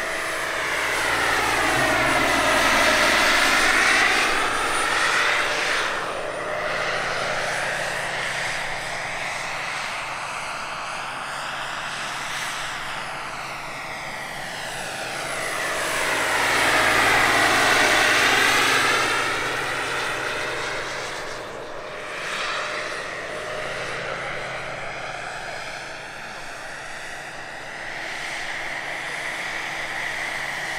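Jakadofsky Pro 5000 model gas turbine and rotor of a 2.5 m scale RC Bell 412 helicopter in flight: a steady high turbine whine under rotor noise. The sound swells louder and sweeps in tone as the model flies close past, twice, about 3 and 17 seconds in.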